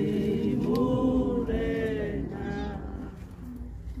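A group of voices singing a hymn without instruments, holding long notes together. The singing is fullest in the first two seconds and trails off before the end.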